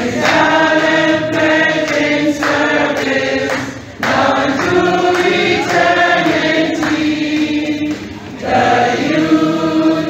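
A group of voices singing a song together, with short breaks between phrases about four and eight seconds in.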